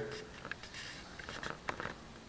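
Faint, irregular light taps and clicks of fingertips on a smartphone touchscreen, about five small ticks in two seconds.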